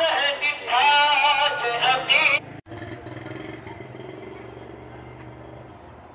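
A ghazal sung with heavy vibrato, cut off abruptly about two and a half seconds in. A much quieter steady rumble with a low hum follows.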